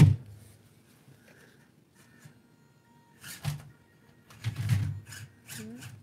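A sharp plastic knock as a drill-bit case is set down on a table, then a few soft knocks and scrapes as a 1/24-scale ECX Barrage UV crawler climbs onto the case. The crawler ends up hung up on its axle.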